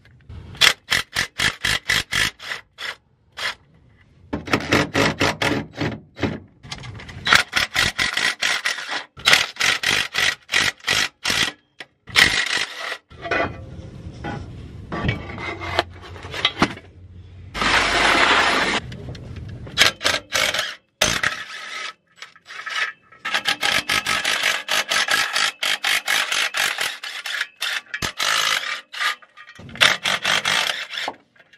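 Hand ratchet wrench clicking in quick runs as bolts under the car are worked loose, in bursts separated by short pauses, with a longer rasping scrape near the middle.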